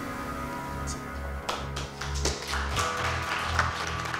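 Background music with a run of light, irregular hand claps starting about a second and a half in.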